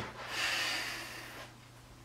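A person's sharp nasal breath out, a snort-like exhale lasting just over a second, after a brief click at the start.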